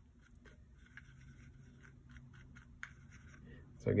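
Faint, soft scrapes and taps of a paintbrush mixing acrylic paint in a plastic palette well, over a low steady hum.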